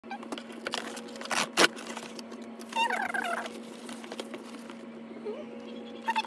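Cardboard shoe box being torn open along its tear strip and handled, in a few short rips, the loudest about a second and a half in. A short wavering pitched sound comes about three seconds in, over a steady low hum.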